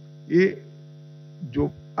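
A man speaking into a microphone in short phrases: one brief word about half a second in, then more speech near the end. Through the pause between them, a steady electrical mains hum with many evenly spaced overtones is plainly heard.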